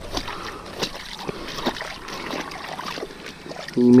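Shallow water splashing and sloshing as a wet, trapped beaver is lifted and turned over at the water's edge, with scattered small knocks and clicks from the handling.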